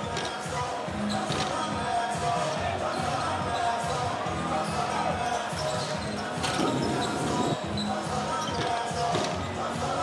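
Several basketballs bouncing on a hardwood court during a warm-up shootaround, over arena music and crowd chatter, with a brief rush of noise about seven seconds in.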